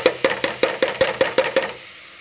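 Steel spoon clicking against the pan in a quick run of light taps, about seven a second, each with a short metallic ring, stopping near the end.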